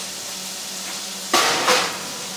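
Metal clatter at the oven as a baking tray of squash goes in, two knocks close together a little over a second in, over the steady sizzle of onions frying in a pan.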